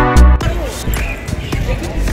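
Electronic background music with a heavy, thumping beat, its loudest hits right at the start, with voices mixed in under it.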